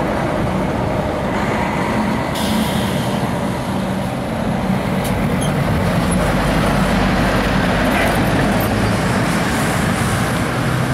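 A large cab-over semi-truck hauling a race-car transporter trailer drives past close by, its diesel engine running steadily. A short hiss of air cuts in about two seconds in.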